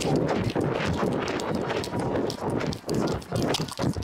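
Sprinting footfalls in baseball cleats heard through a microphone worn on the runner's body, a rapid rhythmic pounding mixed with the rub and rustle of the jersey against the mic as he runs the bases.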